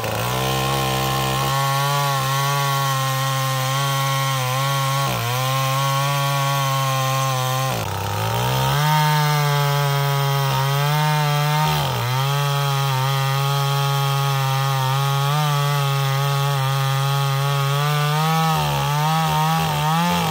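A chainsaw runs steadily at high revs, cutting through a durian log. Its engine pitch dips briefly three times, about 5, 8 and 12 seconds in, as the chain bites into the wood.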